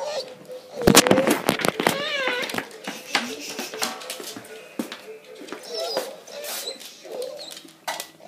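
A dog whining, with a wavering up-and-down whine about two seconds in and a few shorter whines later, among knocks and rustling.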